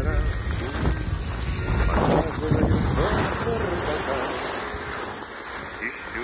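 Wind buffeting the microphone with a heavy low rumble, strongest in the first three seconds and easing after. Over it, a voice sings a wordless "da, da, da" to a tune.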